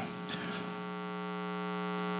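Steady electrical mains hum with several evenly spaced overtones, heard plainly in a pause between words.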